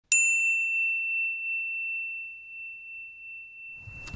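A single bell-like ding struck once at the very start, ringing on as one clear tone that fades slowly over the next few seconds.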